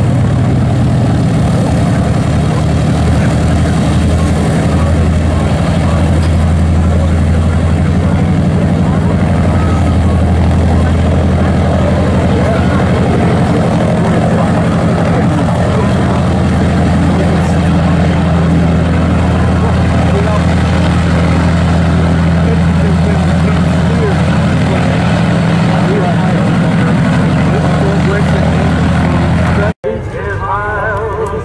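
The four Wright R-3350 radial engines of a Boeing B-29 Superfortress running at low power as it taxis past, a loud, steady, deep engine sound with propeller beat. It cuts off abruptly just before the end.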